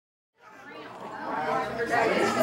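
Dead silence at a cut, then indistinct chatter of several people talking at once fades in about half a second in and grows louder.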